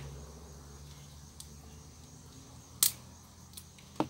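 Garden scissors snipping a kale stalk to cut off its roots: one sharp snip nearly three seconds in, with a few fainter clicks before and after.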